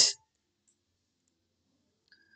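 Faint computer keyboard clicks from typing, a few scattered keystrokes in near silence.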